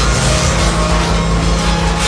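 Loud, dense power-electronics noise: harsh hiss filling the whole range over a pulsing low rumble, with several steady droning tones held throughout.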